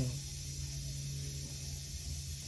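Room background: a steady low hum with an even hiss, and nothing sudden.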